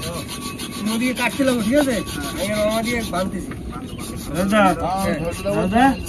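Repeated hand rubbing or scraping, a rapid rough stroking that keeps on through the whole stretch, with men's voices talking quietly underneath.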